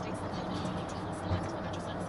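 Steady road and engine noise of a car driving at motorway speed, heard inside the cabin, with a radio faintly playing speech and music underneath.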